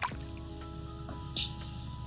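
Soft background music with held notes, broken by two short clicks, one at the start and one about a second and a half in: a smartphone camera shutter taking photos.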